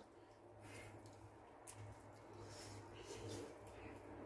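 Near silence: faint mouth sounds of people chewing bitten slices of bannock pizza, over a low steady hum.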